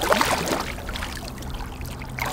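A hooked channel catfish thrashing and splashing at the water's surface, loudest in the first half second and then dying down to softer water noise.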